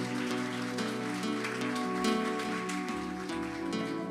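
Congregation applauding, a dense patter of many hands clapping, over the worship band's soft held chords.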